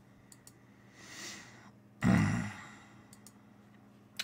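A man's breathing and a short voiced sigh about halfway through, with a couple of faint computer clicks early on.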